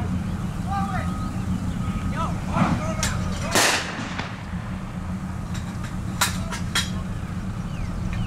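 A staged battlefield explosion, a pyrotechnic charge going off about three and a half seconds in, with a smaller bang just before it. After it come several scattered sharp cracks of blank gunfire, all over a steady low engine hum from the idling vehicles.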